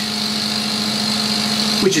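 Steady hum of running machinery, a constant low tone under a thin high hiss, with no change in level. A man starts to speak again at the very end.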